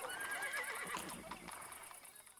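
A horse neighing, the sound fading out near the end.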